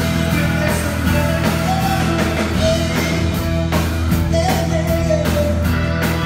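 Live rock band playing at a steady volume: Hammond organ chords held under a singing voice, with drums keeping the beat.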